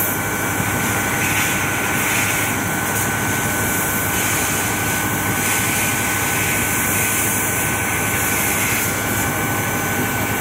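Steady machinery drone from a power house, running without change, with a high, steady whine over it.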